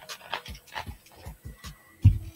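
Quick, rhythmic panting breaths, about three a second.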